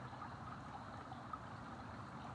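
Shallow creek water trickling faintly and steadily.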